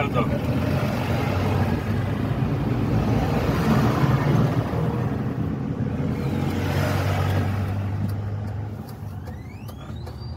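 Road and wind noise inside a moving Piaggio Ape E City FX electric three-wheeler, a steady low rumble with a rushing swell, loudest about four seconds in and again around seven seconds. The noise eases near the end, where a brief rising whine comes in.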